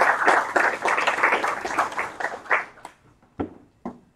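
A roomful of people applauding, a dense patter of many hands clapping that dies away about three seconds in, followed by a couple of short knocks.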